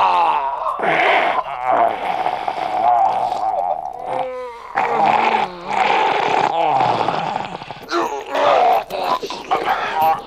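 Zombie snarling and growling over a man's pained groans and cries, one continuous attack with a brief drop about four seconds in.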